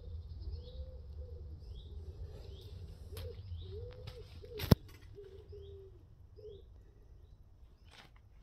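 Birds calling: a pigeon cooing in low repeated phrases and a small bird giving short rising chirps about once a second. A single sharp click a little past halfway is the loudest sound, over a low rumble.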